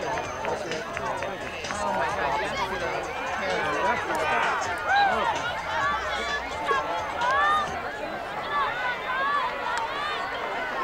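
Many voices of players and sideline spectators at a girls' lacrosse game overlapping, with shouts and calls rising above a steady babble. The loudest shouts come about five seconds in and again around seven and a half seconds.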